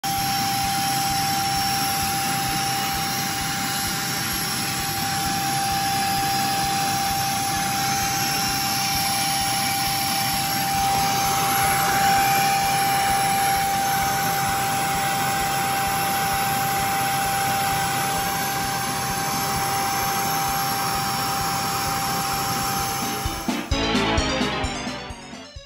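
Beldray cyclonic vacuum cleaner running steadily, a motor whine with one constant tone over the rush of air, briefly louder about halfway through. It cuts off just before the end.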